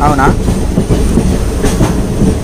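Passenger train running, heard from inside the coach: a loud, steady low rumble with wheel clatter on the rails.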